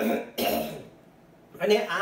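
A man clearing his throat: two short rough bursts in the first second, then a pause, with his speech resuming near the end.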